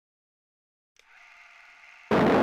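Silence, then about a second in a faint, steady hiss with a few hazy tones in it begins.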